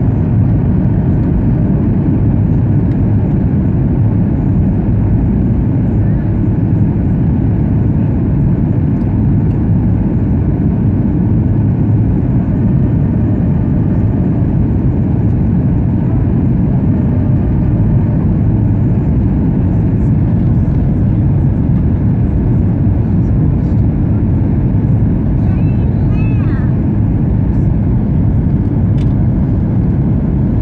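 Steady, even cabin noise of a Boeing 737-900ER airliner descending on approach: the CFM56 turbofan engines and airflow heard from a window seat beside the wing, heaviest in the low end.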